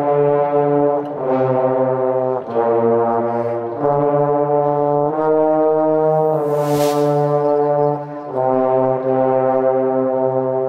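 Trombone choir playing slow, sustained chords that move to a new chord about every second and a quarter, with one longer-held chord near the end. A brief high hiss sounds about two-thirds of the way in.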